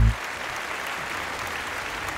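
Studio audience applauding steadily, right after a held final chord of the music cuts off at the very start.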